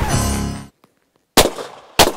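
Music stops abruptly; after a brief silence, a shotgun fires twice, about 0.6 s apart, each shot ringing out briefly.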